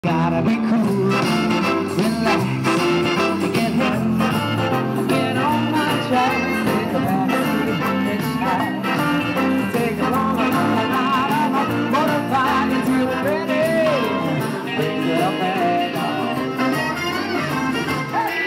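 Live band music with electric guitar, and a man singing through a microphone over it.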